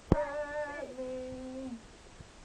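A voice sings one drawn-out note that holds steady and then steps down to a lower held pitch, ending just before the close. A sharp knock, the loudest sound, comes just as it begins.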